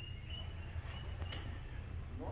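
Quiet workshop background: a steady low hum with a faint, broken high-pitched tone and a few light ticks.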